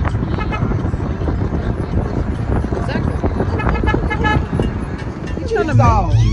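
Car horn giving short toots in two groups, near the start and again about three and a half seconds in, over the steady low rumble of a car driving, heard from inside the cabin. The cattle on the road ahead are the likely reason for the honking.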